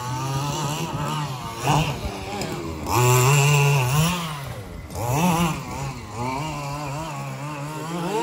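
A 25 cc two-stroke petrol engine in an FG Marder large-scale RC buggy, revving up and down under throttle as it drives the track. It is loudest in a long surge about three to four seconds in, with shorter bursts just before two seconds and around five seconds.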